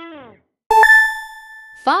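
A bright, bell-like ding sound effect. It is struck once just under a second in and rings on with a clear tone, fading away over about a second.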